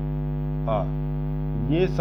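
Steady electrical hum, a low drone made of several fixed tones that does not change, with a teacher's voice briefly saying one syllable over it.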